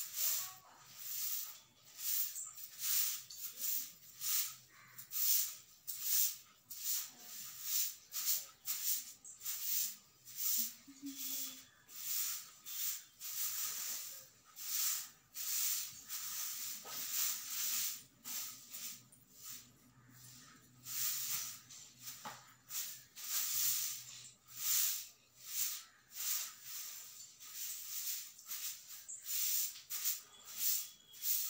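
Broom sweeping a floor: steady rhythmic swishing strokes, about two a second.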